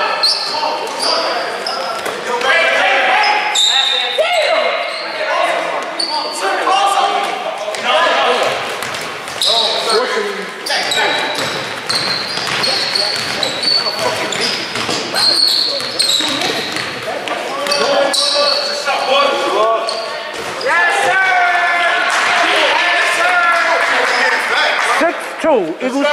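Basketball game play in a gym: a basketball bouncing on the court, short high sneaker squeaks, and players' shouting voices, all echoing in the large hall.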